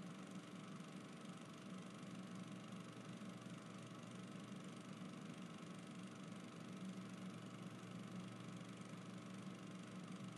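Faint, steady low hum with a light hiss, unchanging throughout: background noise with no distinct sound event.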